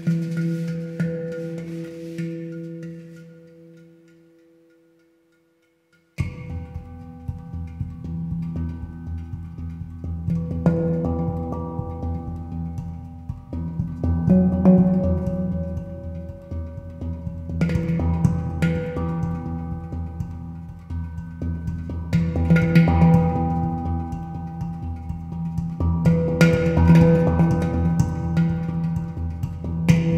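Handpan (pantam) played by hand: ringing steel notes die away over the first few seconds to near silence. Then, about six seconds in, playing resumes suddenly with struck notes and taps in a busier rhythm over a steady low rumble, swelling louder toward the end.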